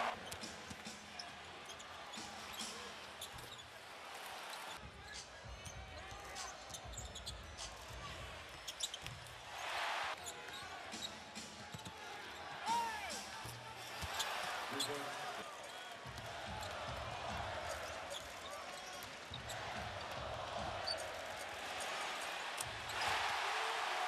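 Live basketball game sound in a crowded arena: a ball bouncing on the hardwood and sneakers squeaking on the court over steady crowd noise that swells several times.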